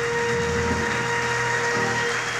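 The last note of the song's orchestral accompaniment held as a steady tone, with an even hiss beneath.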